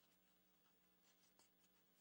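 Near silence, with faint rustling of fabric as hands work the control module out of a fabric sleep mask's pouch.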